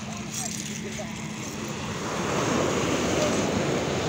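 Surf breaking and washing up a sandy beach, louder about halfway through as a wave comes in, with wind on the microphone.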